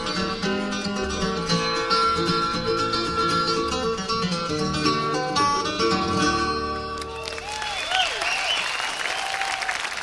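Acoustic bluegrass band with guitars, mandolin and upright bass playing the closing bars of a song, the music stopping about seven seconds in. Audience applause and cheering follow at the end of the song.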